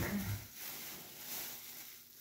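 Thin plastic bags rustling and crinkling as a crumpled plastic bag is pulled out of a trash bag. The rustling is a faint, even hiss.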